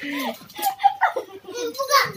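Young children's voices, talking and calling out excitedly as they play.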